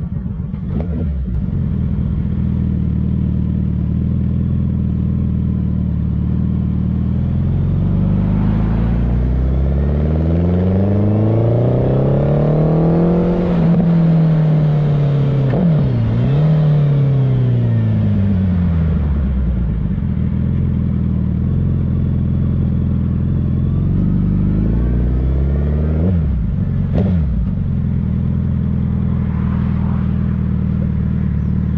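Sport motorcycle engine heard from on board while riding on a highway, with wind noise. The engine note rises in pitch from about eight seconds in, peaks near the middle with a brief dip, then falls back by about twenty seconds. A short sharp sweep comes near the end.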